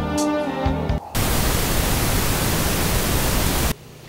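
Music ends about a second in and gives way to a burst of loud, even static hiss lasting about two and a half seconds, which cuts off suddenly and leaves a faint low hum.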